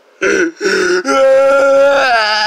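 A person's voice singing without clear words: two short pitched sounds, then one long held note from about a second in.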